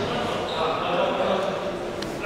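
Indoor futsal game: players calling out on court, with the ball bouncing and being kicked on the hall floor.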